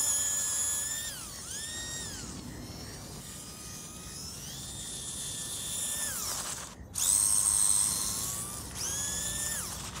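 High electric whine of a 1/24-scale Mofo Bouncer crawler's PN Racing 90-turn motor, driven by a Furitek Lizard Pro ESC on 3S, in repeated throttle bursts. Each burst rises in pitch as the car speeds up, holds, then falls away, and the sound cuts out briefly about two-thirds of the way through.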